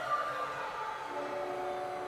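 Symphony orchestra holding sustained chords; the held tones fade and a new chord of held notes comes in about a second in.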